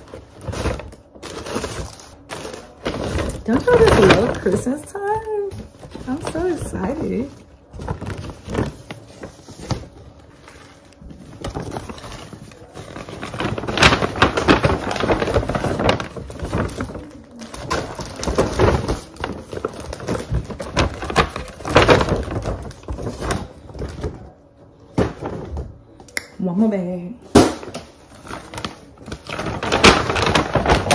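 Paper gift bag and tissue paper rustling and crinkling as they are handled and packed, in a run of irregular crackles.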